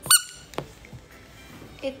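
A rubber duck toy squeezed once, giving a single short, high-pitched squeak right at the start.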